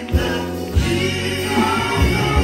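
Gospel quartet singing live through microphones: a lead voice over backing harmonies, with band accompaniment of low bass notes and drum beats.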